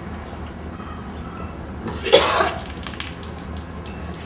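A woman coughs once, a short harsh burst about halfway through, over a steady low hum.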